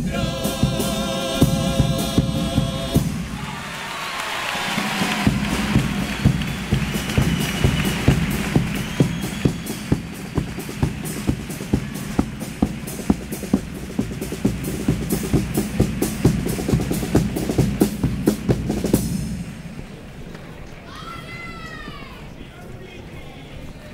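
Carnival chirigota ensemble: a held final chord ends about three seconds in, with a swell of audience noise. Then the group's bass drum and snare keep a steady beat until shortly before the end.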